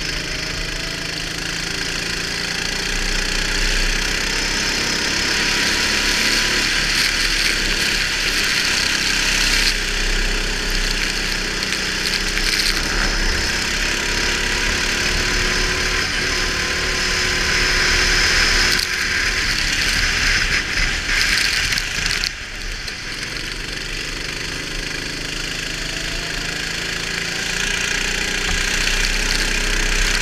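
Go-kart engine under way, its pitch climbing steadily along each straight and dropping back for the corners, with a brief lift-off about 22 seconds in. A strong hiss of wind and spray from the wet track runs under it.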